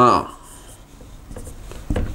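Dry-erase marker writing on a whiteboard, a faint scratching as a circled number and a word are drawn, with a soft knock near the end.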